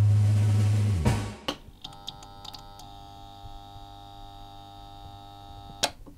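Electronic intro sting: a loud deep bass drone that stops with a sharp hit about a second in, followed by a scatter of light clicks and a quieter held chord of steady tones, closing with another sharp hit near the end.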